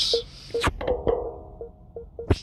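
Parking-sensor warning tones of a BMW 530e sounding as reverse is selected: several short beeps and a longer held tone in the middle, with a sharp click about a third of the way in.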